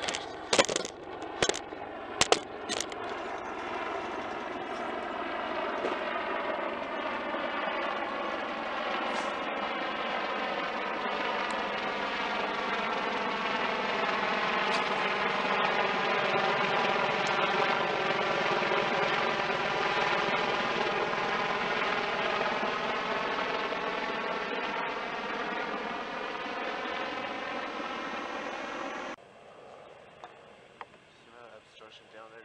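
An aircraft passing overhead: a steady noise that slowly swells to its loudest a little past the middle, then eases off and cuts off suddenly near the end. A few sharp clicks come in the first three seconds.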